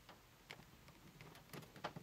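Faint clicks of a screwdriver turning a screw into a microwave's sheet-metal vent grille: one click about half a second in, then a quicker run of clicks near the end.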